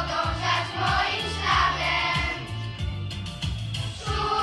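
Children's choir of girls singing a song in unison over a backing track with a steady beat and bass line.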